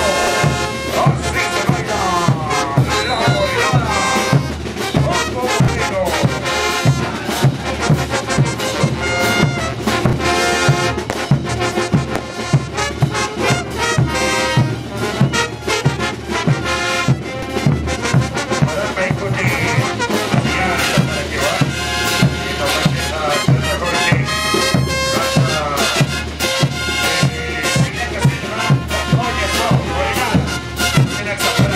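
Live Bolivian street brass band playing dance music: trumpets and other brass carry the melody over a steady, regular bass-drum and cymbal beat.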